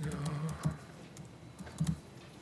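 A few keystrokes on a laptop keyboard: one sharp click well under a second in and a quick cluster near the end, with a short murmured voice at the start.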